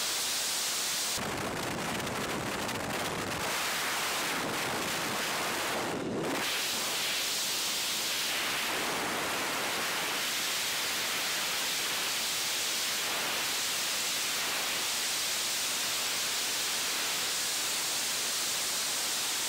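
Freefall wind rushing over a camera's microphone: a steady, loud hiss of air that grows fuller and deeper about a second in and settles back after about six seconds.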